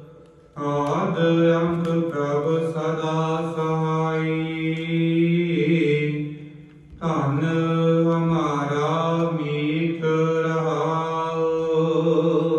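Sikh kirtan: voices chanting a gurbani hymn in long, held, melismatic phrases over a steady sustained low note. The singing is missing for a moment at the very start and breaks briefly a little past halfway before resuming.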